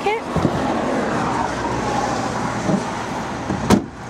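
A hatchback tailgate, the Kia Rio's boot lid, shut once with a single sharp thud near the end, over a steady background rumble.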